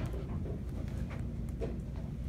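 Handheld camera being carried along: a steady low rumble of handling and walking noise with a few faint soft clicks.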